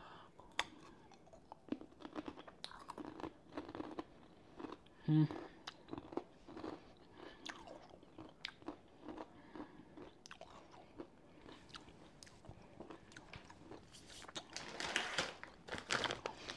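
A person biting and chewing crunchy rolled corn tortilla chips (Takis Buckin' Ranch): scattered sharp crunches with a short hum about five seconds in. Near the end, the plastic chip bag crinkles.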